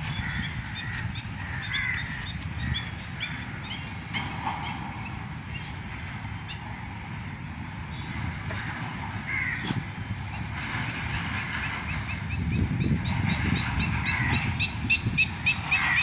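Crows cawing and other birds calling, over a steady low rumble of wind on the microphone; the calls grow louder in the last few seconds.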